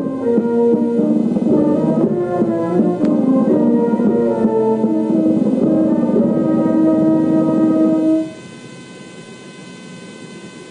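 Slow brass band music playing, which ends abruptly about eight seconds in. A steady electrical hum remains after it.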